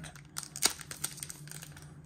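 Trading-card pack wrapper crinkling in the hands as it is worked open, faint, with a few sharp crackles about half a second in.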